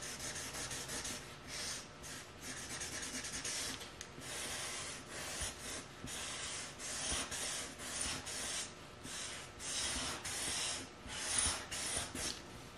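Felt-tip marker nib scratching across paper in runs of quick back-and-forth colouring strokes, with short pauses between runs.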